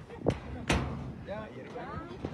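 Two sharp knocks about half a second apart, the second louder, followed by a person's voice.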